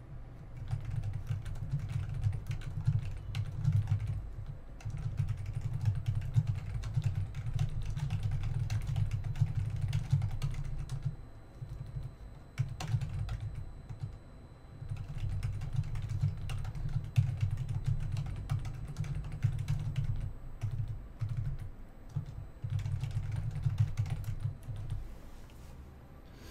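Typing on a computer keyboard in quick runs of keystrokes, broken by a few short pauses.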